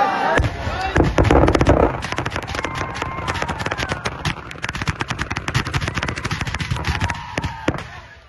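Firecrackers packed inside a burning Ravana effigy going off in a rapid chain of bangs, loudest and densest about a second in. They continue as a fast crackle of pops that thins out near the end.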